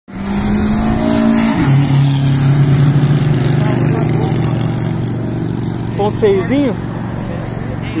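A car engine pulling hard at high revs, dropping in pitch once about a second and a half in as it shifts up, then holding a steady note that slowly fades as the car moves away.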